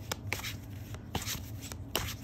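A deck of tarot cards being shuffled by hand: a scatter of light, irregular card clicks and rustles.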